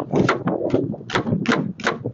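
Kitchen knife chopping through an onion onto a plastic cutting board: a quick run of sharp chops, about two a second.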